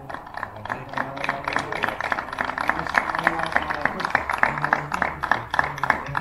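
Rapid, irregular hand clapping that grows denser and louder about a second in, with voices underneath.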